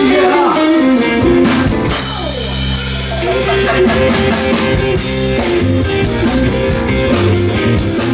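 Live band playing a swinging jazz-blues song: drum kit, hollow-body electric guitar and keyboard, with a woman singing.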